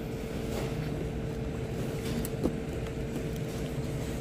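Supermarket background noise: a steady low rumble with a constant faint hum, and two light knocks, one about half a second in and one about two and a half seconds in.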